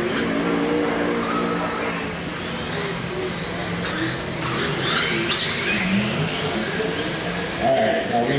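Radio-controlled sprint cars racing on a dirt oval, their motors giving high whines that rise and fall as the cars accelerate and lift through the turns.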